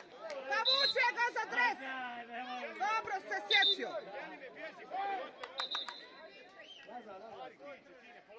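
Several indistinct voices of players and spectators calling out and chattering at once across a football pitch.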